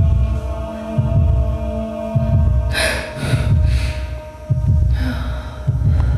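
Electronic performance soundtrack: a deep bass pulse beating about once a second over a steady hum, with three short bursts of hiss about halfway through and another near the end.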